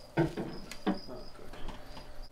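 A ceramic water dish set down into aspen bedding in a glass tank, with one sharp click a little after half a second in. Two short murmured voice sounds come around it, and a faint high-pitched tone comes and goes.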